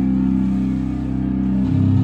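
Live rock band's distorted electric guitar and bass holding a loud, low droning chord with no drums. The chord changes to new pitches near the end.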